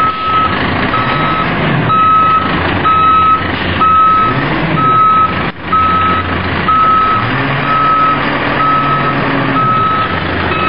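Backup alarm of a Maxon Legal One automated side-loader garbage truck, beeping steadily about once a second as the truck reverses, over the truck's engine running.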